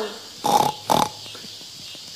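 A puppeteer's voice makes two short, breathy bursts about half a second apart, a vocal sound effect for one of the animal puppets.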